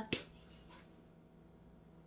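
One sharp click as the red plastic cap of a vanilla extract bottle is opened, followed by near quiet with only a faint steady hum.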